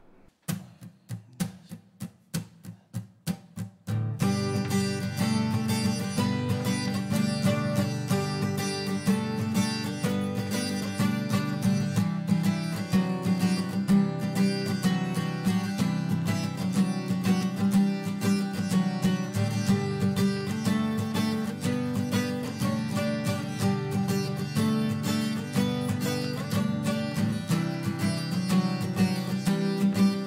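Two acoustic guitars playing an instrumental song intro, strummed and picked together. The first few seconds hold only soft, evenly spaced clicks, and the full playing comes in about four seconds in.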